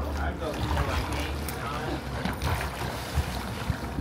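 Wind rumbling on the microphone over faint water sloshing and splashing from a person swimming in a pool.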